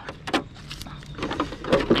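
Handling noise from an RC car's plastic body shell: a few sharp clicks and knocks as the body clips are pulled and the shell is lifted off the chassis.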